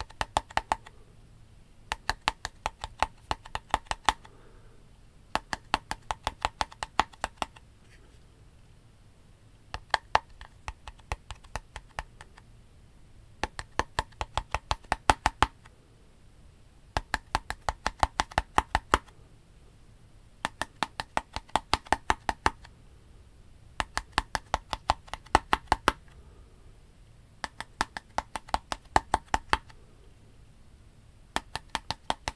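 Fingertips tapping rapidly on a white labelled container, close to the microphone. The taps come in rhythmic runs of about two seconds, each run followed by a pause of a second or so, and the pattern repeats through the whole stretch.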